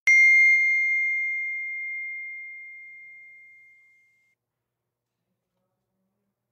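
A single bright, bell-like ding that rings out and fades away over about four seconds, after which the sound cuts out to dead silence.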